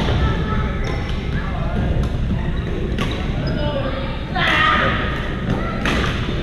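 Badminton rackets striking a shuttlecock during a rally, sharp cracks every second or two, in a large sports hall with players' voices calling out between shots, loudest a little past four seconds.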